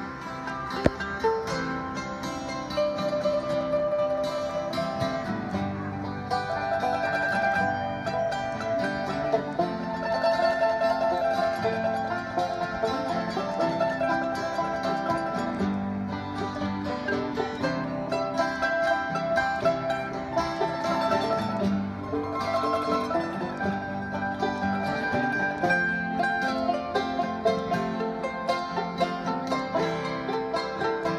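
Acoustic string band of banjo, mandolins and acoustic guitar playing an instrumental passage together in a bluegrass style, with a single sharp click about a second in.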